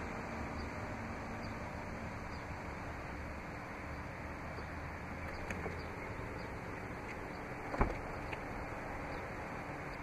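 The 2017 Chrysler Pacifica's electric power driver's seat motor running steadily as the Stow 'n Go assist drives the seat forward, with a low hum that stops about six seconds in. A single short thump follows near the end.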